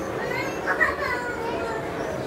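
Children's voices in a busy room: high, gliding exclamations about half a second to a second in, over a steady background murmur.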